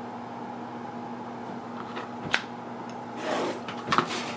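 Handling of a clear acrylic quilting ruler and a quilted fabric block on a cutting mat: a single tap about halfway, then a short rustling scrape and a couple of light taps near the end, over a steady low room hum.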